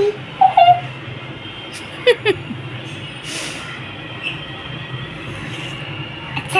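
Dancing cactus toy running, with a steady low motor hum. A few brief voice sounds come near the start and about two seconds in, one falling in pitch.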